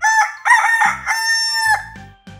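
Rooster crowing cock-a-doodle-doo as a cartoon wake-up sound effect, a choppy opening followed by one long held final note, marking daybreak.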